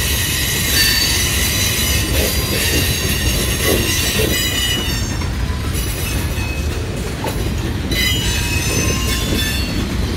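Freight train of boxcars rolling past: a steady low rumble of wheels on rail with high, shrill steel-wheel squeal over it, which eases about five seconds in and returns near eight seconds.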